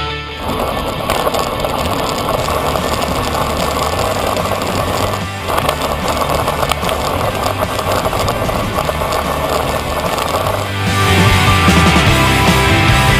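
Road bike rolling along an asphalt road, a steady rush of tyre and wind noise on the microphone, with a short drop about five seconds in. Rock music comes back in near the end.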